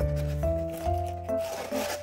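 Cardboard mailer box being closed by hand, its lid and flaps rubbing and scraping into place in the second half, over soft background music.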